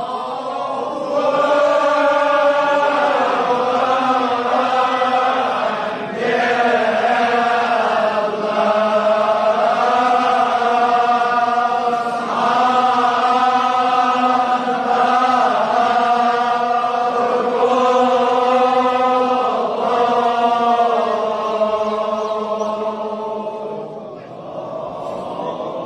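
Kashmiri marsiya chanted by men's voices, long drawn-out notes in phrases of about two seconds over a steady low held note.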